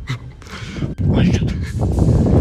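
Footsteps and phone handling noise in a concrete tunnel, irregular and heavy in the low end, with a brief muffled voice about a second in.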